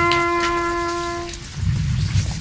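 Bugle holding one long, steady note that ends about a second and a half in, followed by a low rumble.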